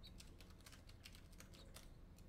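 Faint typing on a laptop keyboard: soft, irregular key clicks, several a second.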